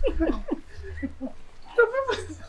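Laughter trailing off in a few short falling gasps, with a voice starting up again near the end.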